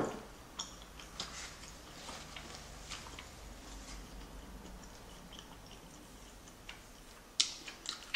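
Close-miked chewing of soft, chewy tteokbokki rice cakes: faint, scattered wet mouth clicks and smacks, with a sharper click near the end.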